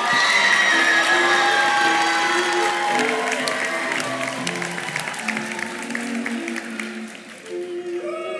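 Audience applauding and cheering over background string music with held notes; the applause thins out and fades over the seconds.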